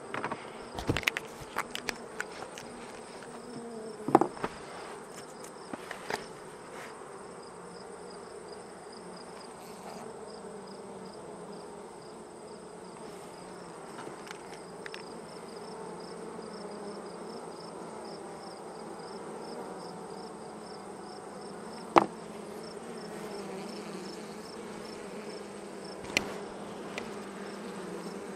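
Honeybees from an open hive buzzing in a steady hum, with a few sharp clicks, the loudest about four seconds in and again near twenty-two seconds.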